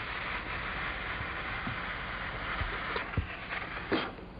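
Steady rushing hiss with a few faint low knocks, dropping away suddenly near the end.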